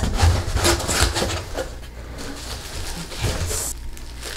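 Rummaging in a cardboard shipping box: packing material rustling and cardboard scraping, with a few dull knocks, busiest in the first second.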